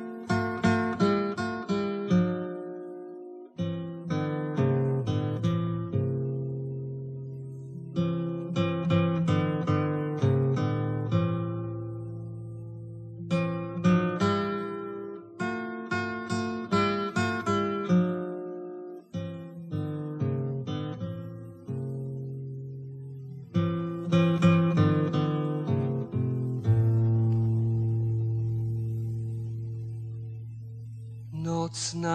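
A spinet playing a solo instrumental introduction: plucked chords and broken-chord runs in phrases a few seconds long, over held bass notes, ending on a long chord left to ring.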